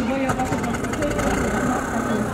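Voices of people talking nearby over the low, steady running of an idling engine.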